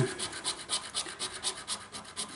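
Scratchcard being scratched: quick, rhythmic back-and-forth strokes rubbing the silver latex coating off the card's play area, several strokes a second.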